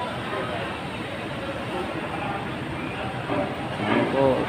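Steady background noise of a waiting crowd, with indistinct voices, and a nearer voice briefly near the end.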